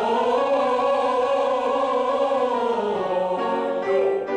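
A man singing one long held vowel in a vocal warm-up exercise, its pitch wavering and arching gently, with piano chords under it; a new chord comes in near the end.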